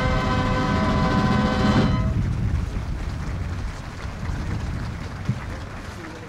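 Brass band holding a final sustained chord that ends about two seconds in, followed by quieter steady outdoor background noise.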